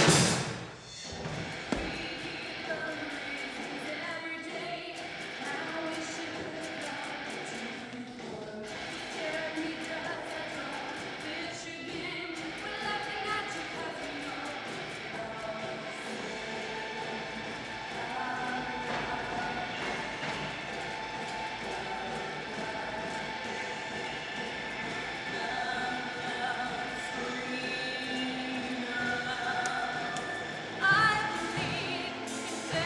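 Recorded gothic-metal song played back on a music-video set. It opens with a loud hit that dies away within about a second, then runs on in a steadier, quieter passage with voices.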